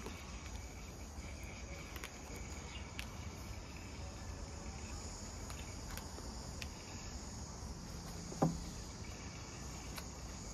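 Faint, steady, high-pitched chirring background noise with a few light clicks, and one short louder knock about eight and a half seconds in.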